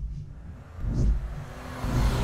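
Intro sound design: deep low booms about once a second, each led by a short rising whoosh, over a steady low rumble.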